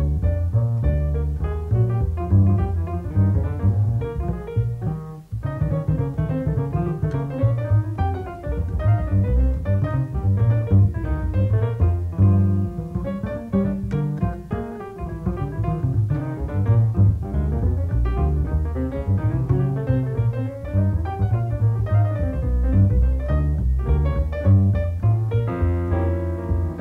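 Acoustic grand piano and plucked double bass playing together as a jazz duo, the bass carrying strong low notes under the piano's moving lines, with a brief break about five seconds in.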